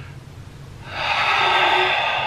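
A man's breath held in near stillness, then, about a second in, a loud, long breath out through the mouth at the end of a held deep breath in a breathing exercise.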